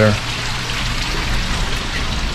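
Steady rush and splash of running water from an indoor reptile tank's water feature, water pouring into a pool.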